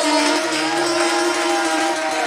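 Azerbaijani ashug folk music played live: a wind instrument holds one long steady note over the strummed saz.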